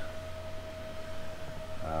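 Steady background hum with a single constant mid-pitched tone over it. A voice begins a drawn-out 'um' right at the end.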